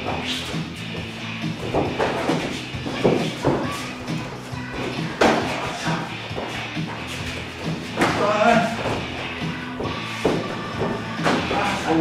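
Music playing throughout, with a sharp thump every second or two from boxing-gloved punches and footwork on the mats during sparring. A brief voice comes in about eight seconds in.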